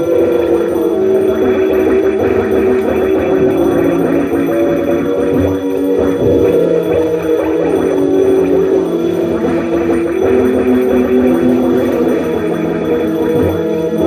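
Live experimental electronic drone: loud, dense held tones that shift in pitch every couple of seconds over a wash of noise, played on a keyboard through effects.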